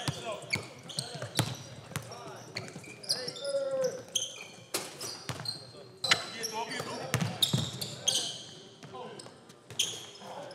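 A basketball bouncing on a hardwood court, with repeated sharp strikes, and sneakers squeaking in short high squeals as players cut during live play. Players' voices call out indistinctly.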